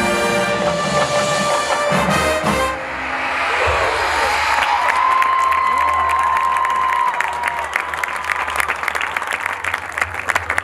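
Marching band brass holding a loud sustained chord that cuts off about three seconds in, followed by crowd cheering and whooping that turns into applause.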